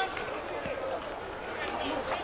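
Faint, scattered voices and calls of footballers on the pitch over a low open-air background, with no crowd noise.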